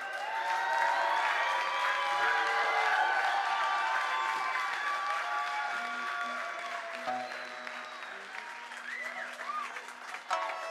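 Live audience applauding and cheering, with scattered shouts and whistles. It swells just after the start and slowly dies away.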